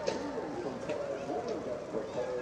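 Several voices calling and shouting over one another while greyhounds race past, with a few sharp clicks about a tenth of a second, a second and a second and a half in.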